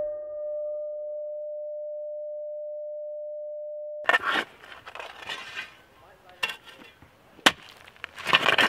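A held keyboard note from the title music rings on as a single steady tone and cuts off suddenly about four seconds in. Scattered faint noises follow, with a sharp click near the end.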